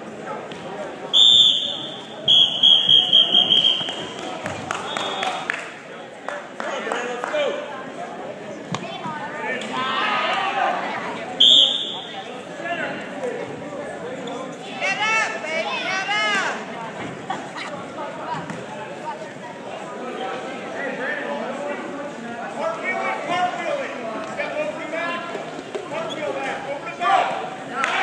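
Referee's whistle blowing three times during a wrestling bout: a short blast, a longer one about two seconds in, and another short blast about eleven seconds in. Spectators shout and cheer throughout.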